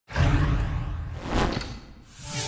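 Whoosh sound effect for an animated logo intro: a sudden rush of noise with a deep rumble that fades over about two seconds, swelling briefly once more near the end.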